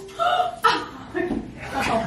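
Several people laughing and chuckling in short separate bursts.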